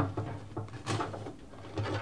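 A few light clicks and knocks of a fuel pump assembly being worked down through a fuel tank's module opening, one about a second in and another near the end, over a steady low hum.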